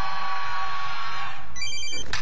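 A long, high-pitched held yell that fades out about one and a half seconds in, then an electronic mobile-phone ringtone starts just before the end.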